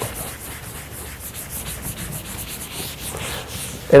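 Soft rubbing noise made of light strokes repeating a few times a second.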